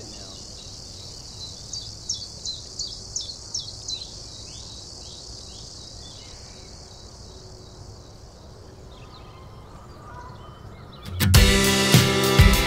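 Evening outdoor ambience: a steady high insect drone, with a bird giving a quick run of about eight chirps between two and four seconds in. About a second before the end, a song starts loudly with acoustic guitar and drums.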